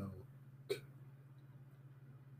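Quiet line with a steady low hum, broken by one brief sharp sound a little under a second in.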